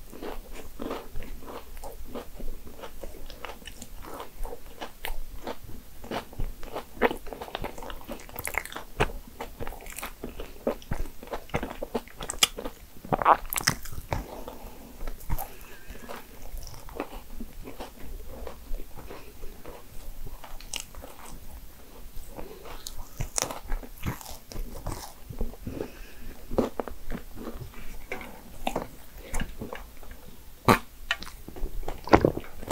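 Close-miked chewing and biting of a Valrhona chocolate financier: a steady, irregular run of small mouth clicks and smacks, with a few louder bites around the middle.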